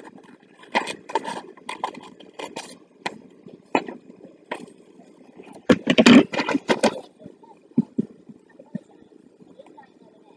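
Scissors snipping through a sheet of paper in a series of short sharp cuts, followed by louder knocks about six seconds in as the scissors are set down on a wooden table. Only faint paper handling follows.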